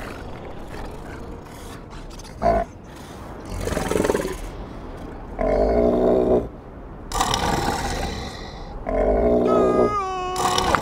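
A cartoon seal snoring: slow, loud, repeated breaths, some a rough low rumble and some a breathy rush, about every one and a half to two seconds from a few seconds in, over a steady wind-like hiss.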